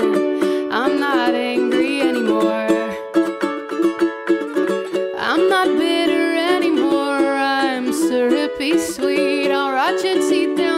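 Ukulele strummed, playing a steady run of chords with no sung words.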